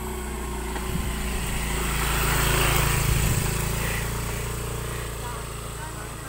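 Small motor scooter's engine passing by on a dirt road: it grows louder to a peak about two and a half to three seconds in, then fades as it moves away.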